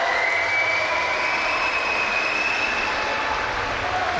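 Steady arena crowd noise: a continuous din of many spectators' voices, with a faint held shout or whistle-like tone above it.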